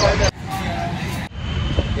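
Outdoor background noise with a low rumble and faint voices, broken by two abrupt cuts, about a third of a second in and again about a second later.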